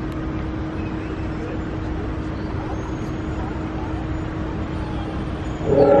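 Steady low rumble and hiss of the car creeping through the drive-through, with a steady hum under it. Near the end a loud recorded dinosaur roar starts from the animatronic's sound effects.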